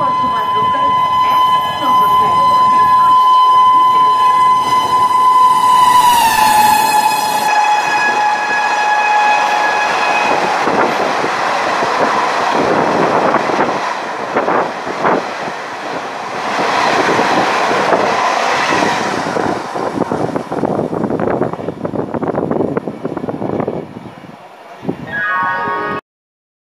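An Indian Railways WAP7 electric locomotive sounds one long, steady horn as it approaches, and the pitch drops about six seconds in as it passes. The Duronto Express coaches then rattle past at speed, their wheels clattering and rumbling on the track, fading away near the end.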